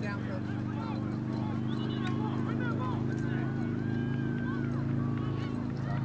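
A steady low motor hum with a fast flutter, under faint shouting voices in the distance.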